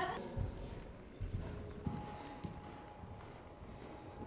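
Horse cantering on a sand arena surface: a few dull hoofbeat thuds in the first half, growing fainter later.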